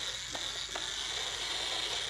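Electric blender motor running steadily with a high whine, blending smoothies, with a couple of faint clicks.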